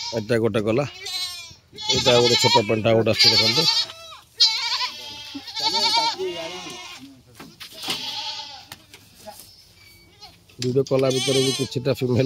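Ganjam goats bleating, several loud quavering calls one after another, with quieter ones in between.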